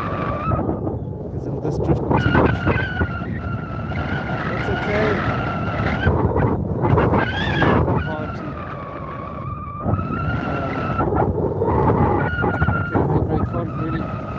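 Wind rushing and buffeting over the microphone in flight, with a paraglider variometer's steady, wavering tone. The tone rises in pitch about halfway through, then drops out for a couple of seconds as the flier works weak lift.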